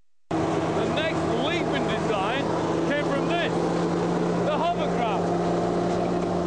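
Steady engine drone, typical of an early hovercraft, cutting in abruptly just after the start, with voices over it.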